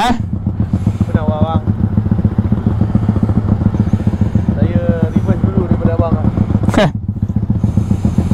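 Yamaha Y15ZR's single-cylinder four-stroke engine idling with a steady low pulsing beat. Faint voices come through in the middle, and there is a short rush of noise near the end.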